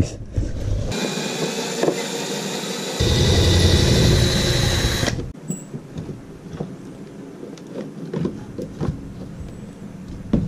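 Cordless power drill running for about four seconds with a steady whine, its sound shifting about halfway through, then stopping abruptly. Light clicks and knocks of hands handling a panel and cables follow.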